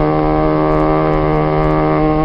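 Male voices in a khassida chant holding a steady drone on one low note between the lead singer's lines.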